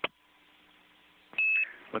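A brief click, then faint radio-link hiss with a low hum, and about a second and a half in a single short beep, one steady high tone lasting about a quarter of a second: a NASA space-to-ground key tone of the Quindar kind, marking a transmission on the air-to-ground loop.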